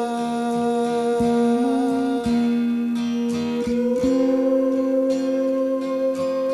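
Slow live band music: a man's voice sings long held notes over plucked guitars and a sustained guitar line, with the notes changing about every second or two.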